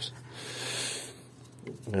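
A soft breath out near the microphone, a hiss that swells and fades over about a second.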